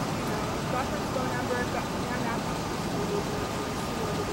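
Steady roadside background noise, like passing traffic or a running vehicle, with faint voices talking in snatches.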